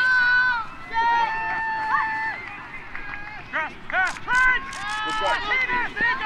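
High-pitched voices shouting and cheering during a youth flag football play: several overlapping, drawn-out calls, some held for about a second, with a cluster of short sharp sounds about four to five seconds in.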